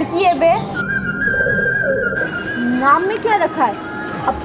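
Whistle-like tones that swoop quickly up and down, with one steady high note held for about a second in the middle and a second flurry of swoops near the end.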